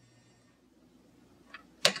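Near silence: faint room tone, with a soft tick and then a short sharp click near the end.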